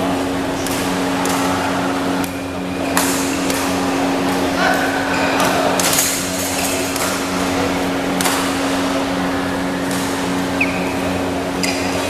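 Badminton doubles rally: rackets striking the shuttlecock with sharp cracks at irregular gaps of a second or two, with short squeaks of court shoes on the floor, over background chatter and a steady hum.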